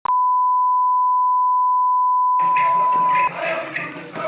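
A steady single-pitch test tone, the reference tone that goes with colour bars, cutting off suddenly about three and a quarter seconds in. From about two and a half seconds in, quieter sound with a regular beat comes in under it.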